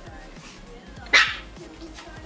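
A single short, loud dog bark about a second in, over background music.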